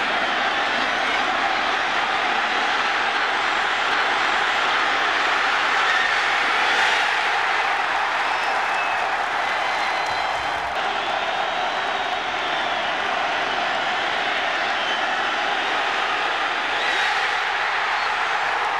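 Football stadium crowd cheering in a steady, loud roar.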